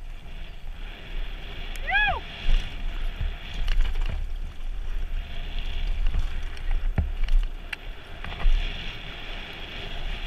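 Trek Remedy trail bike riding fast down a dirt trail: steady wind rumble on the microphone with the tyres and bike rattling over the ground and sharp knocks from bumps, the loudest about seven seconds in. About two seconds in, a short high-pitched sound that rises and falls.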